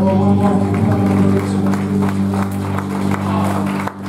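Live worship band music: keyboard and electric guitars holding a steady chord, with scattered sharp hits over it. It drops away briefly just before the end.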